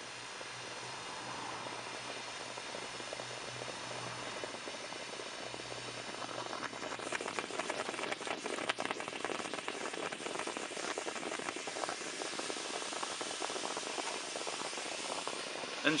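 Sodium hydroxide solution fizzing and hissing as it reacts with an aluminium seat post inside a steel seat tube, giving off hydrogen. From about seven seconds in, the fizz turns crackly and spitting, with many small pops.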